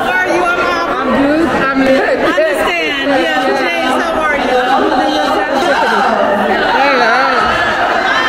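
Crowd chatter in a large hall: many voices, mostly women's, talking over one another at once with no single voice standing out.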